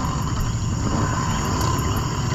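Crickets chirring steadily over a continuous low rumble.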